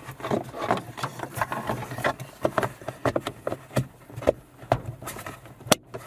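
Hard plastic clicking, tapping and rubbing as a dash-cam cover is handled and pressed into place around a rear-view mirror mount, with a sharp click just before the end. A low steady hum runs underneath.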